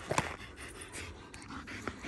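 A dog panting, with a few short clicks over it.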